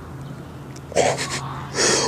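A person gasping twice, short and breathy, about a second in and again near the end, over a steady low hum.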